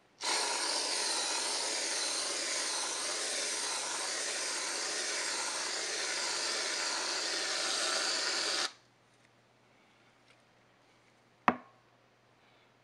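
Aerosol whipped cream can spraying cream into a bowl: one long steady hiss of about eight and a half seconds that stops abruptly. A single sharp click follows near the end.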